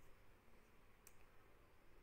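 Near silence: room tone, with a single faint click about a second in.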